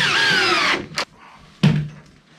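Cordless drill driving a screw into a door's latch plate: the motor whine drops in pitch as the screw seats and stops under a second in. A sharp click follows about a second in, then a short thump near the end.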